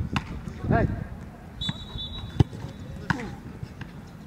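A football struck and caught during goalkeeper drills: three sharp thuds of boot and gloves on the ball, the loudest about two and a half seconds in.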